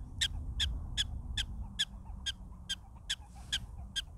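Prairie dog giving its repeated alarm call: short, high-pitched barks about two and a half a second, kept up steadily, directed at people close to its burrow.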